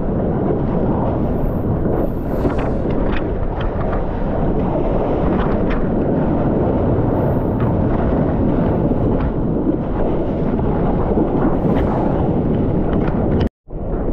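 Steady, loud rush of wind buffeting a GoPro's microphone and whitewater churning around a surfboard as it rides a wave, with scattered small ticks. The sound cuts out for a split second near the end.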